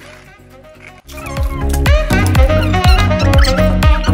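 Added background music that cuts in abruptly about a second in, after a faint first second: an electronic dance track with a fast, steady bass-drum beat under a high melody.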